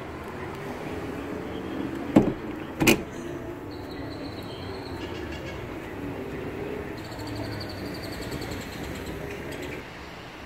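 Two sharp knocks less than a second apart, about two seconds in, over steady low background noise inside a car's cabin.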